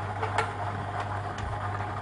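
Steady low hum under faint background hiss, with a couple of faint clicks about half a second and a second and a half in.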